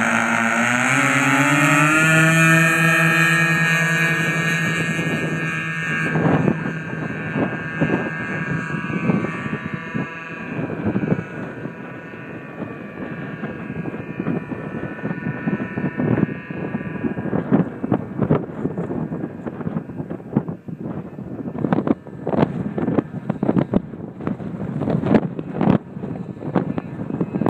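Twin two-stroke K&B .61 glow engines on a large radio-controlled model plane rev up to full throttle over the first couple of seconds and hold steady, then fade as the plane flies away. Wind buffets the microphone from about six seconds in.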